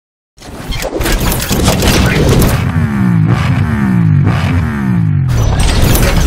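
Motorcycle intro sound effects: a rush of whooshes and impacts, then an engine revved four times in quick succession, each rev falling away in pitch, and a final hit near the end.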